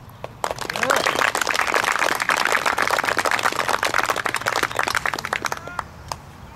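Small audience applauding, with a few voices mixed in. The clapping starts about half a second in, holds steady for about five seconds and dies away near the end.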